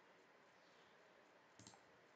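Near silence with a single computer mouse click about one and a half seconds in.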